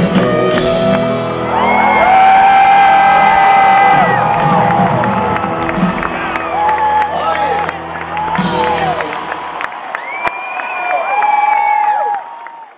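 A country band playing live in a stadium at the close of a song, heard from among the audience, while fans nearby let out several long whoops and cheers that fall in pitch at the end. The band's bass drops away about ten seconds in, leaving the cheering.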